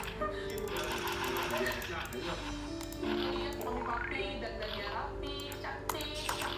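Video game music with chiming sound effects, short clicks and a rising sweep about three and a half seconds in, from a fish-raising game.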